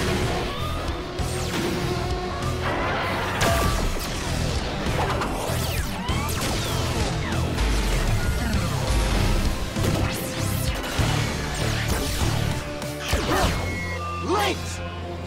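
Driving action music laid under synthetic effects for giant robots combining into a Megazord: repeated heavy metallic clanks and crashes, with whooshing sweeps, all through.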